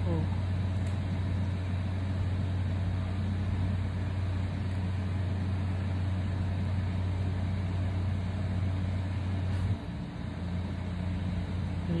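Steady low machine hum with a faint hiss over it, which cuts off abruptly near the end, leaving a quieter hiss.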